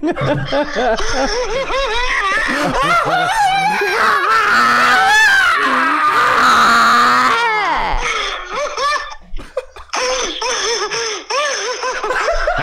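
Men laughing hard in rapid repeated bursts, rising into one long high-pitched laugh in the middle; the laughter drops away briefly after that and then picks up again near the end.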